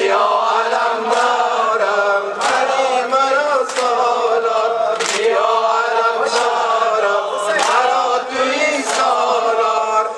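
Male voices chanting a Persian Muharram mourning lament (noha) together into a microphone, with a sharp slap about every 1.3 seconds keeping time, the rhythm of ritual chest-beating.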